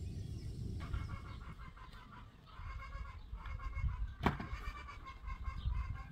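Farmyard animals calling in short, choppy bursts, starting about a second in, over a low rumble, with one sharp knock a little after four seconds.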